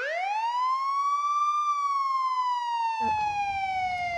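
Police car siren wailing: one quick rise in pitch, then a long, slow fall. Faint background noise comes in about three seconds in.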